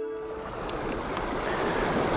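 Small sea waves washing over a pebble beach: a steady wash with a few faint clicks. A held note of ambient music fades out within the first half second.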